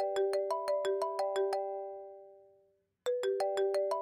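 Mobile phone ringtone: a quick run of bell-like notes, about six a second, that rings out and fades, then starts over again about three seconds in.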